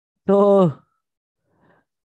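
Speech only: a man says one drawn-out word, 'to' ('so'), falling in pitch, followed by a pause.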